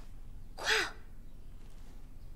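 A single short crow caw that falls in pitch, used as a comic sound effect on an awkward pause.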